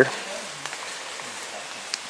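A steady, even hiss of outdoor background noise, with one short click near the end.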